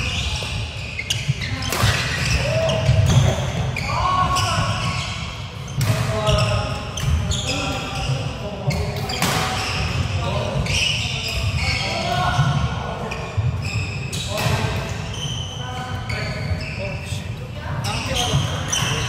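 Badminton being played in a sports hall: repeated sharp racket strikes on the shuttlecock and footwork thudding on the wooden court floor, with players' voices in the background.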